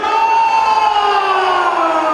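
Several voices holding a long, drawn-out call that rises slightly in pitch and then slowly falls, without the breaks of ordinary speech.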